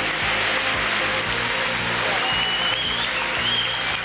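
An audience applauding over background music.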